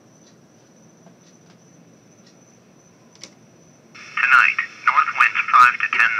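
Bearcat 101 scanner radio scanning with its audio squelched: faint hiss and a thin steady high whine. About four seconds in, it stops on a channel and a received voice comes through its speaker, thin and telephone-like.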